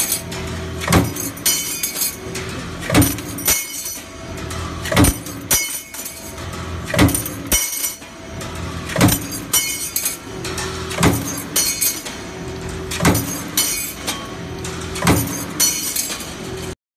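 Power press with a single die stamping steel hinge blanks, one heavy stroke about every two seconds, eight strokes in all. After the strokes the cut metal blanks clink and jingle as they drop onto the pile, over a steady machine hum.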